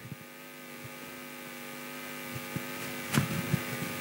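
Steady hum from the microphone sound system, several even tones at once, slowly growing louder, with a few faint knocks and a click about three seconds in.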